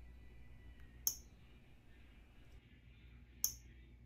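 Two faint, short clicks about two and a half seconds apart, from taps on a smartphone touchscreen, over a faint low hum.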